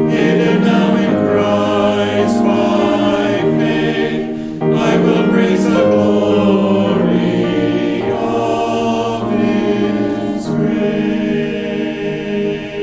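Mixed choir of men's and women's voices singing in held chords, with a brief break between phrases about four and a half seconds in.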